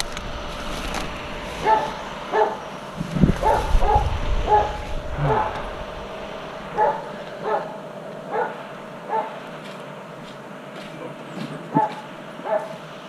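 A dog barking repeatedly, about ten short barks spaced roughly a second apart, thinning out in the last few seconds.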